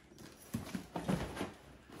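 A cardboard shipping box being picked up and handled: a few soft knocks and scuffs in quick succession.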